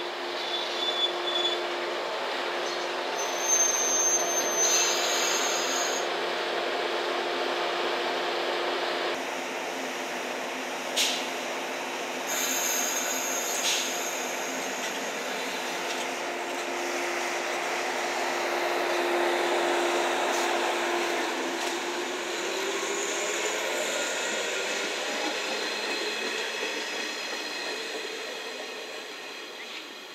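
JR West 115-series electric train at a platform. It gives a steady low hum, with a brief high-pitched squeal a few seconds in and a single sharp click near the middle. In the last third a tone rises in pitch.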